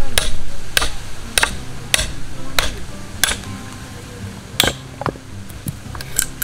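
A metal hand hammer (Owari no Ootsuke Teduchi) striking the spine of a steel splitting blade (Owari no Ootsuke Senpo) to split a block of firewood into kindling. Six sharp strikes about 0.6 s apart are followed by a single strike after a short pause. Background music runs underneath.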